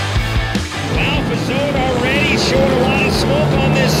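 Rock music ends about a second in. Then several racing side-by-side UTV engines rev up and down repeatedly as the race starts.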